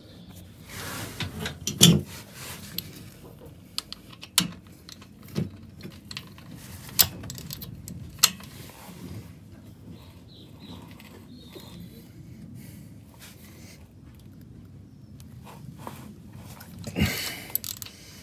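Ratchet and quarter-inch hex socket working a motorcycle's transmission drain plug loose: scattered sharp clicks and knocks a second or two apart, with a louder noise near the end.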